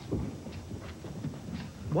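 Footsteps of several people walking, as a run of irregular low knocks and scuffs.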